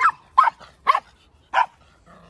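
Small dog barking: four short, sharp barks spaced about half a second apart.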